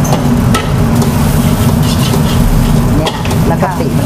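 A metal spatula scraping and stirring in a wok as shrimp paste is mashed into fried garlic over the flame, with a light sizzle and irregular scrapes. A steady low hum runs underneath.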